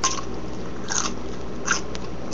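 A bite into a crisp pickle, then crunchy chewing: one crunch right at the start and two more about a second in and near the end.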